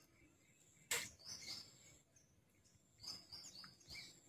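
Near silence with a single faint click about a second in and a few faint, high bird chirps in the background, in two short clusters.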